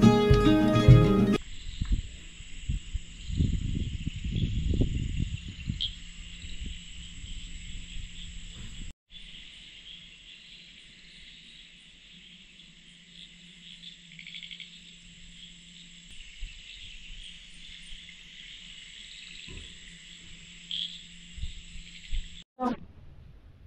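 A steady high chirring of crickets and other night insects. For the first several seconds it sits under low rumbling and knocking noise, and the tail of guitar music ends about a second in.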